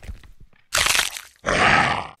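Stock fight sound effects for a stick-figure animation: a crash dying away, a sudden hit about two-thirds of a second in, then a short beast-like growl from about a second and a half in.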